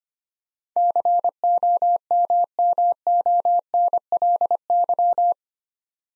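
Computer-generated Morse code sidetone, a single steady tone keyed in dits and dahs at 25 words per minute, spelling the word "COMMONLY" for head-copy practice. The tone starts just under a second in and stops about a second before the end.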